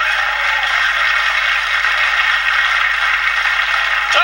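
Steady hiss of television static, the noise of a TV switched between channels.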